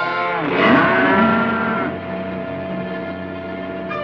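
Cattle mooing: one loud call starting about half a second in and lasting over a second. It sounds over a film music score that holds steady notes.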